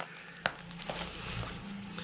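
Faint handling noise as thread is wound tight around a sock stuffed with balls of paper, with a sharp click about half a second in.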